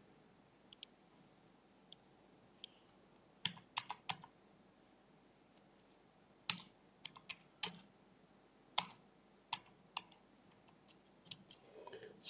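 Faint, irregular keystrokes on a computer keyboard as numbers are entered: single taps and short runs of a few keys, with pauses between them.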